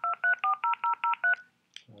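Touch-tone telephone keypad dialing: a quick run of two-tone beeps, about five a second, stopping about one and a half seconds in.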